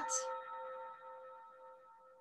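A quiet bell-like chime with a few steady tones, ringing on and fading away over about two seconds.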